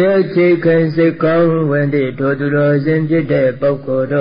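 A Burmese Buddhist monk's voice chanting in a steady, sing-song recitation, one man's voice held near one pitch and broken syllable by syllable.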